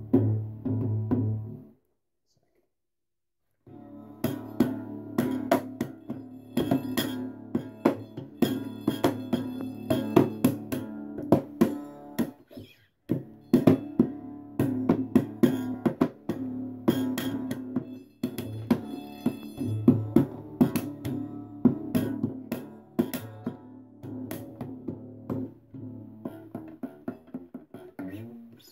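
Homemade three-string, shamisen-style box instrument played for its bass sounds: the strings are struck in quick, sharp strokes over steady ringing drone strings. It stops for about two seconds near the start and then plays on in a busy rhythm.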